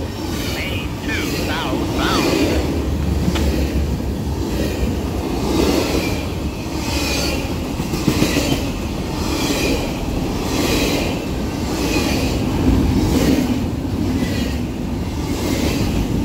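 Double-stack container freight train rolling past close by: a steady rumble with wheel clicks coming round about once a second, and a few short wheel squeals in the first two seconds.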